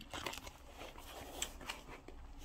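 Soft, faint chewing of ramen noodles, with a few light clicks.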